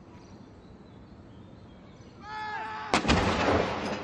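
An L118 105 mm light gun fires a single blank salute round about three seconds in: one sharp boom followed by about a second of rumbling echo.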